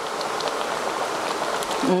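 Coconut-milk curry (masak lemak) simmering in a wok, a steady bubbling hiss, while a spatula stirs through it.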